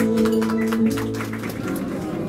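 The closing held chord of a small live acoustic band fades out about a second in. It gives way to room noise with light clinks.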